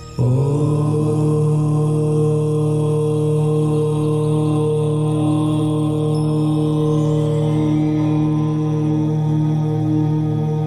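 Devotional background music: a long, steady chanted mantra drone with held tones that comes in abruptly just after the start.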